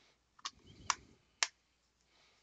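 Blu-ray steelbook case being handled: three sharp clicks about half a second apart, with a short rustle of handling between the first two.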